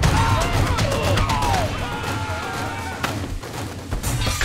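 Animated action-film fight soundtrack: dramatic score mixed with fight sound effects, sharp hits among them, and wavering shouts.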